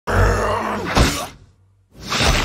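A man's strained, effortful groan over a deep, steady rumbling power effect, with a sharp hit about a second in, then both die away.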